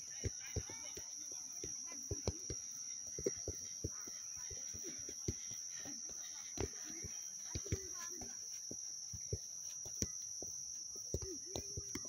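A football being tapped by bare feet on grass during dribbling: short, soft knocks at an irregular pace, about two or three a second, over a steady high-pitched insect drone.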